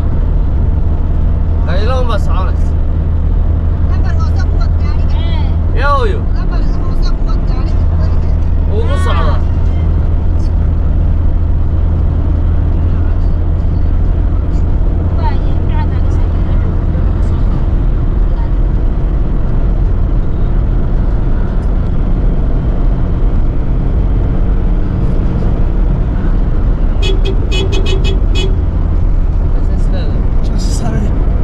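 A car cruising steadily on a smooth asphalt highway: a constant low drone of engine and tyre noise, heard from inside the car. Brief snatches of voices come and go over it.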